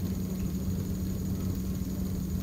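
Steady low hum with a faint hiss under it, holding one even pitch throughout: the room's background tone between spoken exchanges.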